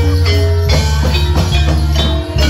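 Jaranan gamelan music: a heavy drum beat under ringing metallophone notes that step through a melody.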